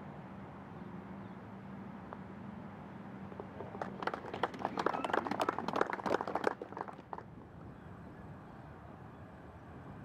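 Golf gallery applauding a holed putt: a burst of clapping that starts about four seconds in and lasts about three seconds.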